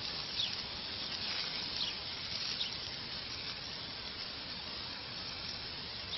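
Garden hose spray nozzle hissing steadily as a jet of water sprays onto plants.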